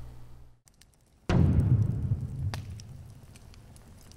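Logo-reveal sound effect: a sudden deep boom a little over a second in, its low rumble fading away over the next two seconds, with faint crackling ticks like embers.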